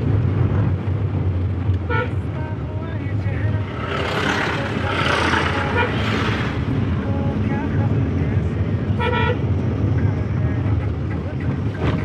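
Steady engine and road rumble heard inside a moving car's cabin, with short horn toots about two seconds in and again about nine seconds in. A hissing rush swells from about four to six seconds in.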